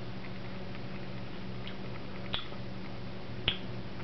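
Mouth clicks and lip smacks of a person tasting food licked off a finger: a few faint ticks and two sharper clicks, one a little past halfway and one near the end, over a steady low room hum.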